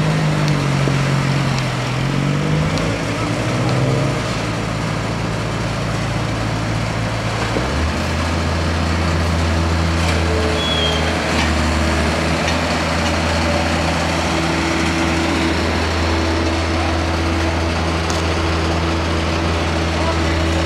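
Diesel engine of a street-works vehicle running. Its pitch dips and rises over the first few seconds, then a deeper, steady engine hum sets in about eight seconds in.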